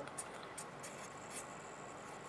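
Felt-tip marker writing on a white surface: a few faint, short scratching strokes, mostly in the first second and a half, as the characters of a coordinate are written.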